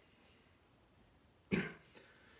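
Quiet room tone, then about one and a half seconds in a single short, sudden vocal burst from a man, cough-like.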